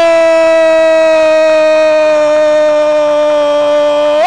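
A Spanish-language radio football commentator's long, held goal cry, 'goool', sustained as one loud unbroken note that slowly sinks in pitch.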